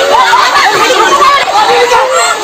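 A crowd brawling and shouting over one another, many voices at once, most of them shrill.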